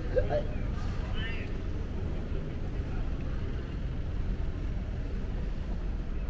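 Steady low rumble of a large indoor hall's background noise, with a brief faint voice in the distance about a second in.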